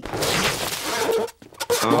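A cymbal crash at the end of a sung finale: a bright, noisy clash that fades out over about a second. A short voice exclamation comes near the end.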